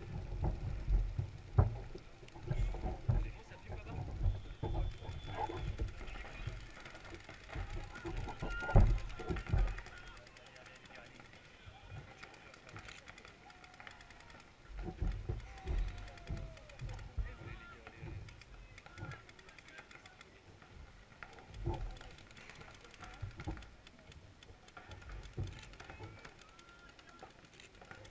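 Wind buffeting the microphone in irregular low gusts, heaviest in the first ten seconds, with indistinct voices of people nearby.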